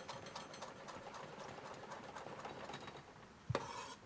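Chef's knife rapidly chopping Thai basil leaves on a wooden butcher-block cutting board: a quick, even run of light taps of the blade on the wood, stopping about three and a half seconds in.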